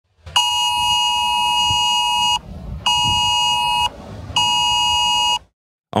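Mobile phone Cell Broadcast emergency alert tone: a loud, steady alarm tone sounding once for about two seconds, then twice more for about a second each with short gaps, over a low buzz. It is the attention signal of a public disaster warning sent to all phones in an area.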